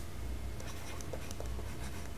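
Stylus writing on a pen tablet: light scratches and small ticks as handwriting is stroked out, over a steady low hum.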